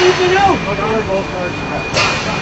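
Men's voices shouting and arguing, over a steady background hum with a faint high tone. A sharp knock sounds right at the end.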